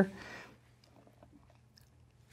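Near silence: quiet room tone after a short breath, with a few faint soft clicks.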